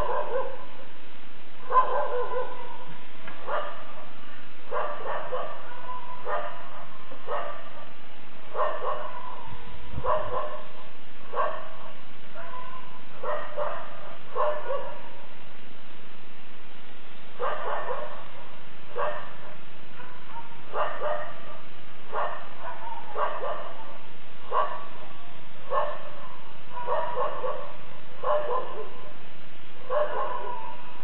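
A dog barking over and over in short barks about one a second, with a pause of a couple of seconds past the middle, over a faint steady low hum.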